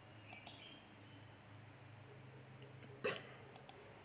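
Quiet room with a steady low hum and a few faint clicks, then one short, sharper sound about three seconds in.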